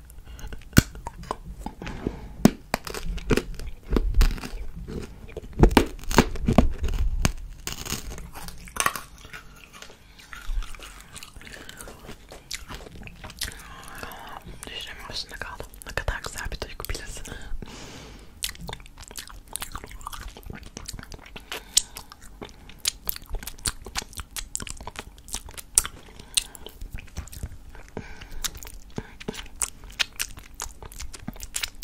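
Close-miked ASMR mouth sounds: wet sucking and licking on a hard candy cane, then lip smacks and kissing sounds against the fingertips. Many quick wet clicks, coming closer together in the second half.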